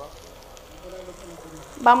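Food sizzling quietly in a pan on a gas stove. A woman's voice starts near the end.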